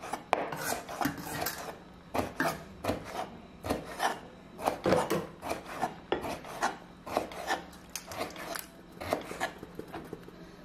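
Chef's knife slicing soft vegetables on a wooden cutting board: a quick, irregular run of cuts, each a short scrape and tap of the blade against the board, about two or three a second.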